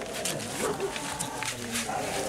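Asian elephant calf crying out while its wounded mouth is held open: one drawn-out cry of about a second, and another starting near the end, with light handling clicks.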